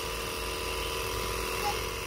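Small portable electric tyre inflator running steadily, pumping air into a car tyre through its hose.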